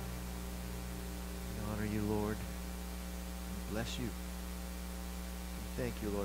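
Steady electrical mains hum, with a couple of short, faint spoken phrases about two and four seconds in.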